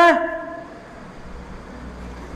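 A man's short, loud exclamation, "ha", spoken into a microphone right at the start, followed by a pause with only a faint low hum.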